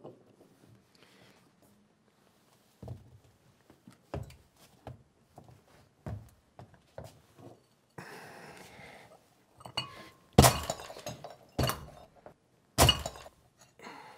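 A small terracotta flower pot being broken up. There are a few light knocks, then about a second of gritty crunching, then three loud breaking impacts about a second apart near the end.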